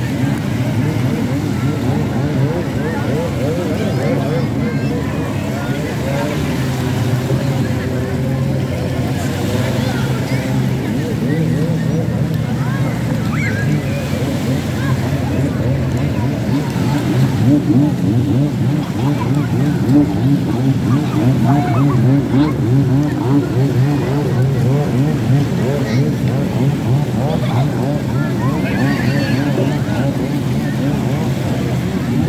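Many people talking and calling out at once, with a jet ski engine running out on the water and small waves washing onto the shore.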